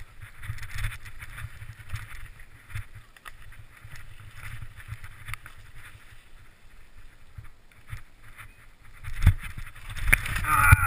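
Mountain bike running down a rocky singletrack: tyres crunching over loose stones, with frequent rattles and knocks from the bike over the rocks, under a steady low rumble of wind on the microphone. A heavier knock comes near the end.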